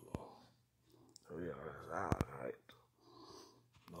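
A man's quiet, hushed speech that the words can't be made out of, in two stretches, with a few sharp clicks among it.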